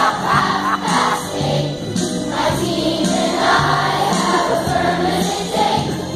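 A children's choir singing a song over instrumental accompaniment, with a steady stepping bass line.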